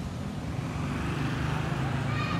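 Low, steady rumble of nearby motor-vehicle traffic, growing a little louder in the second half.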